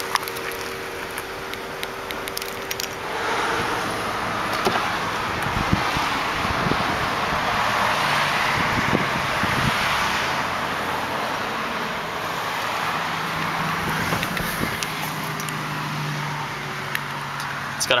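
Keys, knocks and handling noise, then a 2005 Volkswagen Passat's engine starting readily and settling into a steady low idle hum over the last few seconds.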